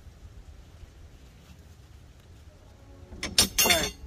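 About three seconds in, a short, loud burst of metal clanking, as steel hand tools are knocked together and set down.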